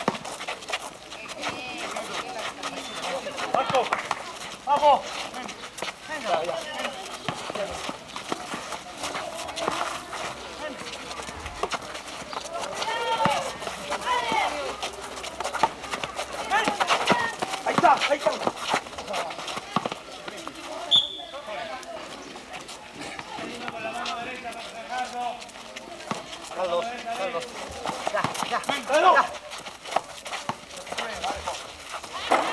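Basketball players shouting and calling to one another during play on an outdoor court, with scattered knocks of the ball bouncing and shoes striking the pavement.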